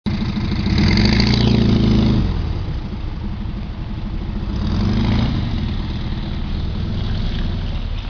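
An engine running, swelling louder twice: about a second in and again around five seconds, where its pitch rises and then drops back.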